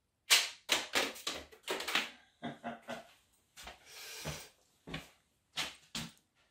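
A sharp snap about a quarter second in, then a quick run of clattering clicks and knocks, a brief rustle and a few scattered knocks: a 3D-printed rubber-band paper-plane launcher being fired and then handled.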